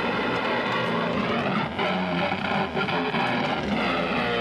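Loud, continuous distorted electric guitar through an amplifier at a live punk show, a dense wall of sustained tones with no break.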